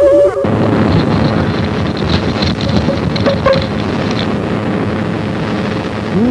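Sound effect of a pain ray being fired: a warbling electronic tone cuts off about half a second in and gives way to a loud, steady rushing crackle.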